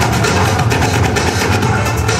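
Loud electronic dance music with heavy bass, playing on without a break.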